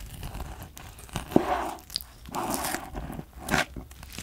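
Kitchen knife slicing through raw yellow stingray liver on a plastic cutting board. The blade passes through the soft liver with wet, squishy sounds, and there are sharp taps as it meets the board, the loudest about a third of the way in and another near the end.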